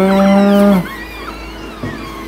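A person's voice: a drawn-out 'mmm' of agreement held at one steady pitch for under a second, followed by quieter background until the end.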